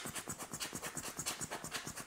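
A rubber squeeze-bulb air blower puffing air onto binocular lenses to clear loose dust: a faint, rapid run of short scratchy hisses, about seven a second.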